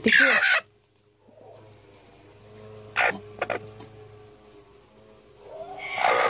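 Broody hen squawking harshly as a hand settles her onto a hay nest of eggs. There is one squawk at the start, a sharp one about three seconds in, and another near the end.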